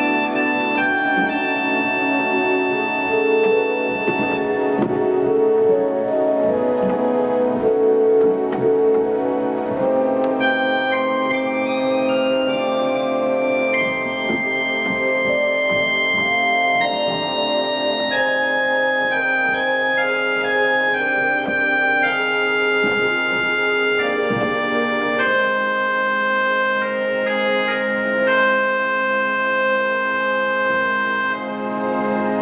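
1964 Balbiani Vegezzi-Bossi pipe organ playing a slow improvised passage: held melody notes over a soft sustained accompanying chord. It demonstrates the solo stops (harmonic trumpet and the loud Corno 4' pedal flute) against the undulating Unda maris.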